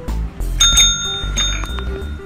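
A tap-top service bell struck twice by a cat's paw, ringing clearly about half a second in and again a moment later, the cat's signal for a treat.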